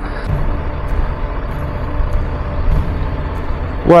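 Triumph Tiger 1200 Rally Pro's three-cylinder engine running at a steady cruise, heard from the bike itself with wind and road noise over it.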